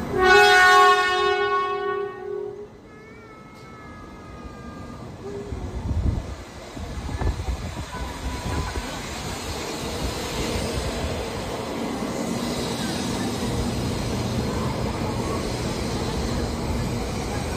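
Doctor Yellow, a 923 series Shinkansen inspection train, sounds one loud horn blast lasting about two and a half seconds. It then pulls away from the platform, its running noise building as it gathers speed.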